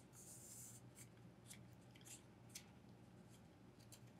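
Near silence: a faint low hum with a brief soft rustle and about half a dozen faint small clicks as metal washers are handled and slid onto a crankshaft.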